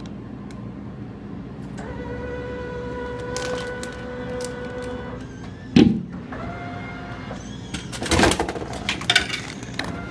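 Glass-front Coca-Cola vending machine delivering a drink. Its motor whines steadily for about three seconds, a bottle lands in the mechanism with a loud thud about six seconds in, and the motor runs again briefly. Then comes a run of knocks and clatter as the bottle reaches the delivery port and the port's flap is handled.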